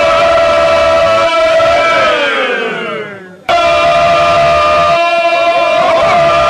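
Several men singing together in full voice, holding one long note. About two seconds in, their voices slide down in pitch together and fade away. About a second and a half later a loud held note starts again abruptly.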